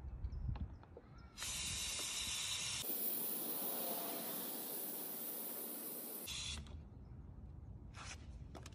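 Steady hiss of gas sprayed from a can into the mouth of a plastic bottle, starting about a second and a half in and cutting off about five seconds later.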